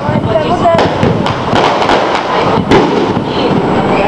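Aerial firework shells bursting in quick succession: a string of sharp bangs, the loudest nearly three seconds in.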